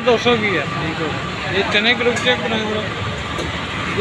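Men's voices talking briefly over a steady background of street traffic noise.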